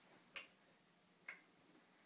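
Two sharp ticks about a second apart, a slow clock-like ticking: the mysterious ticking noise.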